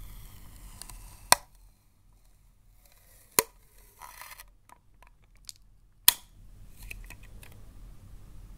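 Clear plastic sticky-tape dispenser handled and tapped by fingernails: three sharp plastic clicks a couple of seconds apart, with soft rustling between.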